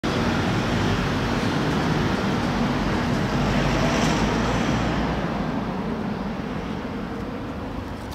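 Road traffic noise: a vehicle's rumble and tyre noise swell to a peak about halfway through, then slowly fade as it moves away.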